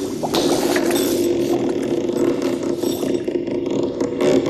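A creaking coffin-lid sound effect: one long, drawn-out creak, with a sharp click about a third of a second in.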